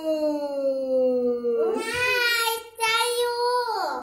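A young girl's long, drawn-out wailing cry at the sourness of a lemon: one held cry slowly falling in pitch, then a second, louder one about two seconds in, broken once briefly.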